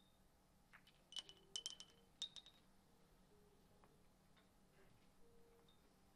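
Billiard balls clicking off each other and off the small standing pins in a five-pins game, a quick cluster of sharp clicks with a short ring about one to two and a half seconds in. A few faint taps follow.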